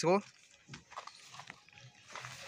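A spoken word ends just after the start. Then come faint rustles and small clicks of dry chopped straw being handled in a plastic crate.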